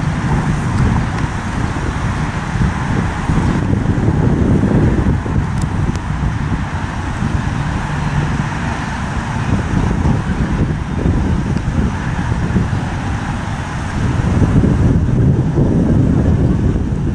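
Wind buffeting the microphone: a loud, uneven low rumble that rises and falls, with stronger gusts about four seconds in and again near the end.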